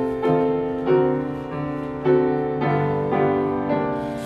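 Piano playing a slow hymn tune in full chords, a new chord struck about twice a second and ringing on between strikes: the introduction to the closing hymn before the congregation sings.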